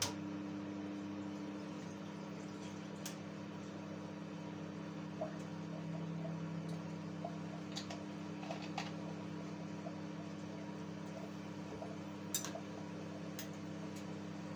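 Ayran poured from a plastic bottle into a glass jar of pork chunks: a faint liquid pour with a few small ticks, over a steady low hum.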